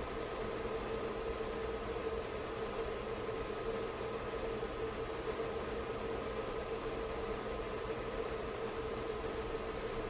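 Steady electrical hum with a constant mid-pitched tone and some fainter higher ones over a low hiss, unchanged throughout.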